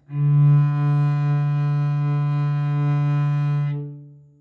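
Cello playing one long bowed note on the open D string, a single slow stroke drawn out to the tip of the bow. The tone holds steady and even, kept up to the tip by index-finger weight on the bow, then fades near the end as the string rings on briefly.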